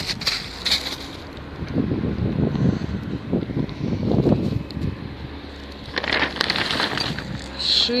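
Close rustling and crunching of plastic sheeting and debris underfoot or in hand, coming in irregular crackly stretches.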